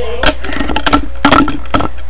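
A quick run of knocks, thumps and rustling as two people drop down onto an upholstered sofa and settle on it.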